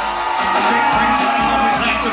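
A live band playing a hip-hop/funk song, drums and guitar with a vocal over them through the stage PA.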